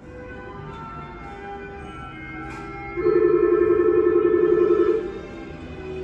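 Station background music playing on the monorail platform, with a loud, warbling electronic tone that sounds for about two seconds in the middle and then stops abruptly.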